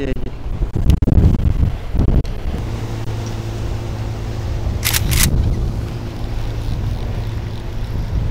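Wind gusting on the microphone, then from about two and a half seconds in a boat's engine hums steadily. Two sharp clicks come close together about five seconds in.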